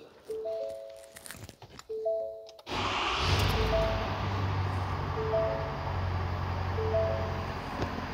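Ford F-350's 6.7-liter Power Stroke V8 diesel starting about two and a half seconds in and settling straight into a steady idle. A two-note dashboard warning chime dings about every second and a half throughout.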